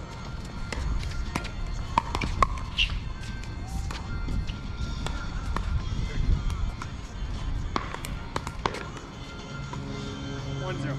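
Pickleball paddles striking the plastic ball in a rally: sharp, hollow pops with a brief ring, a pair about two seconds in and a quick run of three near the end.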